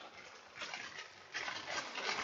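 Plastic bag crinkling and rustling as an oiled foam air filter is squeezed and kneaded inside it to work the engine oil through the foam; faint at first, louder from about a second and a half in.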